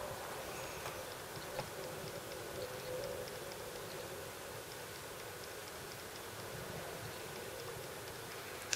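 Steady faint hiss and hum of room noise, with a few faint light clicks, the clearest about one and a half seconds in, as a nail polish brush and its glass bottle are handled.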